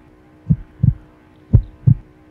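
Heartbeat sound effect: two low double thumps, lub-dub, about a second apart.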